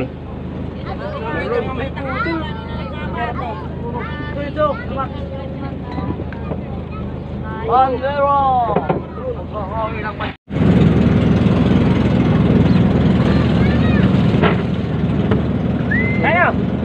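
An engine on a fishing boat running steadily with a low hum, under background chatter of several voices. The sound cuts out abruptly a little past halfway and comes back with the engine hum louder.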